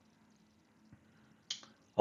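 Near silence, with one short, sharp click about one and a half seconds in.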